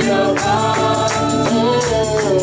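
Live gospel worship song: voices singing into microphones over a band, with a tambourine shaken in a steady rhythm.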